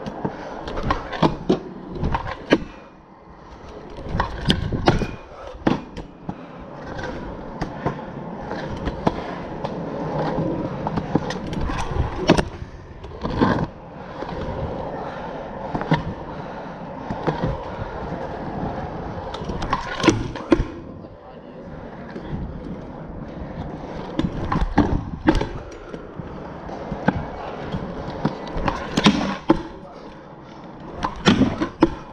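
Stunt scooter's wheels rolling over concrete, a continuous rolling noise broken by many sharp clacks and knocks of the deck and wheels hitting the ground on hops and landings.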